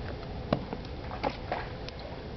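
Footsteps on wooden dock planks: a few short knocks, the loudest about half a second in, over a steady background hiss.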